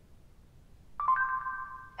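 About a second of near silence, then an electronic chime from the Nexus 7 tablet's Google Now voice search: two steady notes, the higher one joining just after the lower, held for about a second as the spoken question is taken and the answer comes up.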